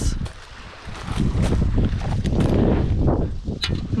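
Wind buffeting the microphone: a gusty low rumble that drops away briefly about half a second in, then returns, with a few faint clicks scattered through.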